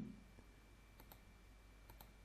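Faint computer mouse clicks over near-silent room tone: a quick pair about halfway through and a single click near the end.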